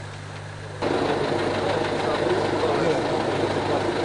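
A vehicle engine running, with people talking nearby. Under a second in, the sound gets abruptly louder and fuller.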